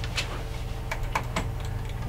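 A few scattered clicks of a computer keyboard being tapped over a steady low studio hum, as the frozen studio computer is worked at.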